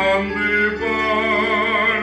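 A man singing a held, wavering note with vibrato over a steady, sustained instrumental accompaniment.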